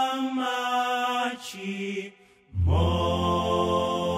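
Male gospel vocal group singing long-held chords. One chord fades off about a second and a half in, there is a brief pause, and a fuller, deeper chord comes in about two and a half seconds in and is held.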